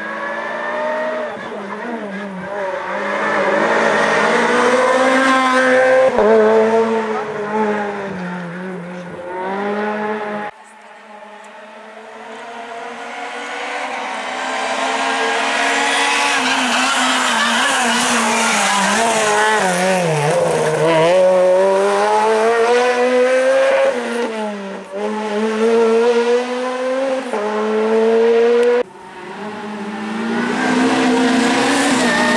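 Renault Clio R3C rally car engine revving hard, its pitch climbing and dropping again and again through gear changes as the car approaches and passes. The sound breaks off abruptly twice where one pass gives way to the next.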